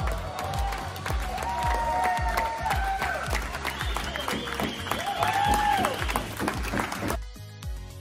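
Background music with a steady beat over a crowd of spectators applauding and cheering. The applause cuts off suddenly about seven seconds in, leaving only the music.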